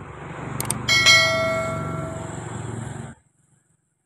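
Subscribe-button animation sound effect: a quick double mouse click, then a single bright bell ding that rings out over a low rumble and cuts off abruptly about three seconds in.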